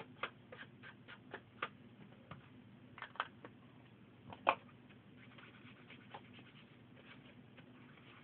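Light, irregular taps and clicks of plastic ink pads being handled on a craft table, with one louder knock about four and a half seconds in.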